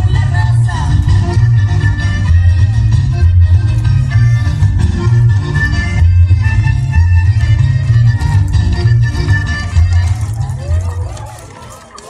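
Loud Latin American dance music with a heavy, pulsing bass line and sustained melody tones, fading down over the last second or so.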